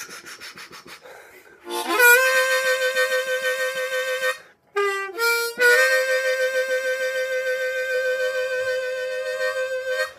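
B-flat diatonic harmonica played in third position. A draw note scoops up out of a bend and is held with throat vibrato. Then comes a short phrase: the bent draw three, blow four, and a scoop up into draw four, held long with a pulsing throat vibrato.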